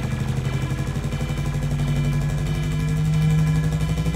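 A low buzzing bass tone with a fast, even flutter in a jungle / drum-and-bass mix, slowly growing louder, with no vocals.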